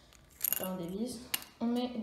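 A single short plastic click as the barrel of a four-colour Bic ballpoint pen is pulled off its threaded top, amid low talking.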